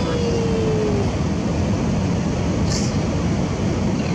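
Steady road and wind noise inside a moving minivan, driving in high wind. A drawn-out voice call trails off in the first second, falling in pitch, and a brief hiss comes a little under three seconds in.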